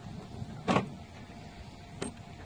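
A key being worked into a car's door lock cylinder: one short metallic scrape, a little under a second in.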